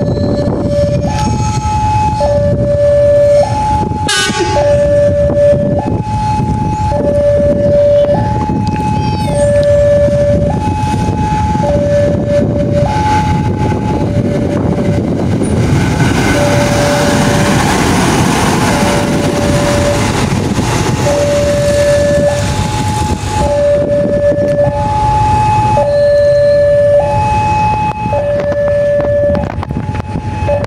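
Electronic two-tone railway level-crossing alarm, switching back and forth between a lower and a higher tone about once a second. For several seconds in the middle it drops out under a louder rushing noise, then resumes.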